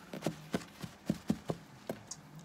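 Light knocks and taps from hands handling things on a wooden floor, about seven in quick, uneven succession.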